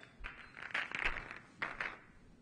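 Pool balls knocking and rolling together as they are gathered and racked on the table. The sound comes in a run of quick clicks through the first second or so, then a second short cluster near the end.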